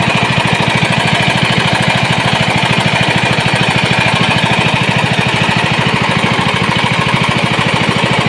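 Small portable generator engine, running on gas from a cylinder, running steadily with a fast, even beat while it powers a soft-serve ice cream machine.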